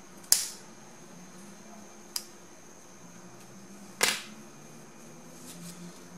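Three sharp, short clicks about two seconds apart, the first and last loudest, over a faint steady hum.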